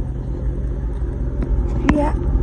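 Low, steady engine rumble of a wide-body Dodge Charger's V8 idling, with one sharp click just before the end.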